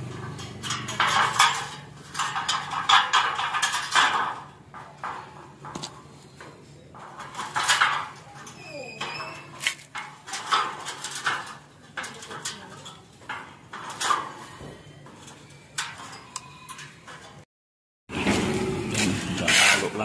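Steel tie wire being wrapped and twisted with pliers around crossed rebar lying in a metal channel form: irregular metallic scrapes and clicks. Near the end the sound cuts out briefly, then louder scraping follows.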